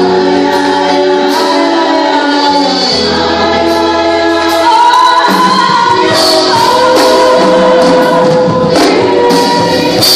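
Church congregation singing a gospel worship song, led by a woman's voice on microphone, with musical backing and some percussion.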